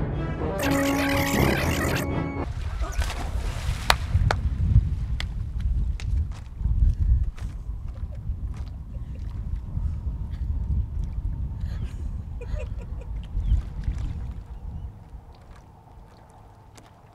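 A dramatic music cue that cuts off about two and a half seconds in, then a steady low rumble of wind on the microphone with small splashes of water.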